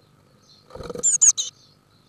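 A blue tit entering a wooden nest box: a short scuffle of claws and wings against the box, with a burst of high, thin, falling calls over it about a second in.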